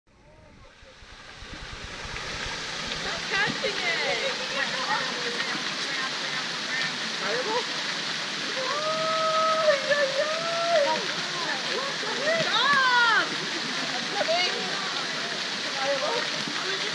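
Water falling steadily from a pool fountain, with children's high-pitched voices calling and shouting over it, including one long drawn-out call about halfway through. The sound fades in over the first two seconds.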